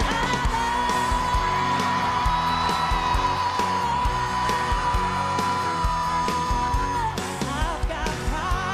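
Live country-pop song: a woman belts over a full band with a steady drum beat, holding one long high note for about six seconds before breaking into shorter phrases near the end.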